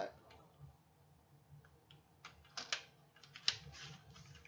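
Paper cutter being handled on a tabletop: a few scattered light clicks and taps, the two loudest in the second half.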